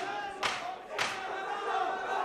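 Fight crowd shouting and yelling over one another, with three sharp smacks about half a second apart in the first second.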